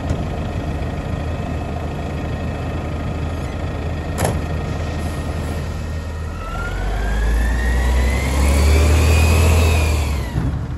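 Mack LEU garbage truck's engine idling steadily, with a single sharp knock about four seconds in. From about six seconds in the truck pulls away: the engine gets louder and a whine rises steadily in pitch.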